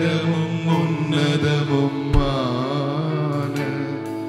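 Slow worship music: steady held chords with an electric guitar under a man's voice singing a slow, wavering, chant-like line. A single low thump comes about two seconds in.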